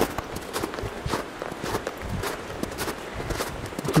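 Footsteps of hiking shoes walking in snow, a steady pace of about two steps a second.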